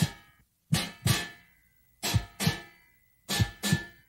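Guitar chords struck in pairs, a slow lub-dub about every 1.3 seconds, each pair ringing out and fading before the next. The rhythm copies a mother's heartbeat.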